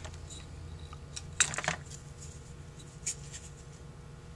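Light clicks and taps of small parts being handled on a Holley 2280 carburetor during a float-level check: the float and a small measuring scale knocking against the metal float bowl. A cluster of clicks comes about a second and a half in and another click near three seconds, over a steady low hum.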